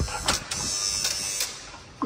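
An electric door-lock release at a building's entrance buzzing for about a second after a click, as the door is unlocked from upstairs.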